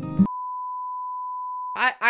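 A single steady electronic beep, one pure tone held for about a second and a half, cut in straight after guitar music stops short; speech comes in near the end.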